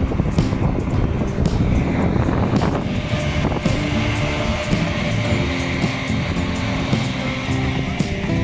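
Background music with sustained low chords that shift every second or so, over a steady rushing noise.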